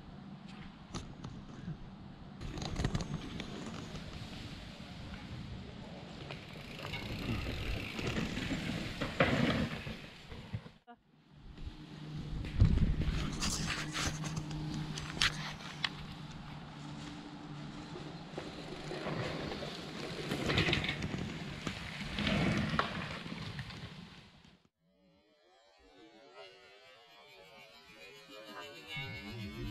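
E-mountain bike riding down a rooty forest trail: tyres rolling over dirt and roots, the bike rattling over bumps, with wind on the microphone rising and falling. A steady low hum runs for several seconds midway, and the sound drops out briefly twice.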